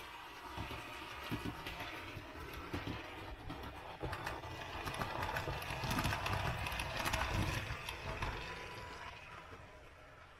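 Model railway train running past on the layout: a low rumble of motor and wheels with quick clicks from the rail joints, swelling to its loudest about six to seven seconds in and then fading away.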